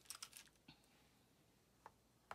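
Near silence with a few faint, light clicks: a quick cluster in the first half-second, one more shortly after, and a single click near the end.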